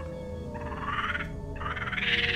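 Frogs croaking in two rasping, pulsed calls about a second apart, over a held, slowly falling music tone.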